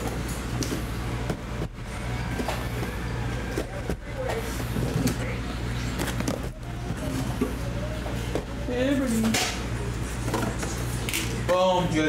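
Cardboard boxes being pulled and slid out of a tight-fitting cardboard case, with scraping and a few short knocks of cardboard on cardboard.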